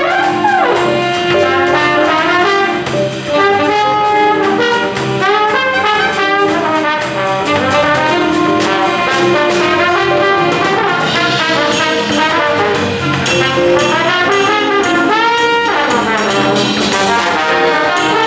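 Big band playing jazz live, with the brass section prominent and a trombone playing out front over saxophones and drums. The notes move constantly, with sliding glides, one falling glide near the end.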